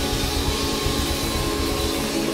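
Live band playing without vocals: held chords over bass and drums with a steady beat.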